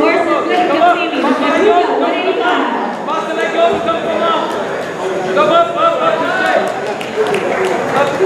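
Several people's voices talking and calling out over one another in a gym hall, with no single clear speaker.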